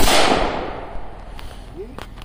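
A single rifle shot: one sharp crack right at the start, with an echo that trails off over about a second.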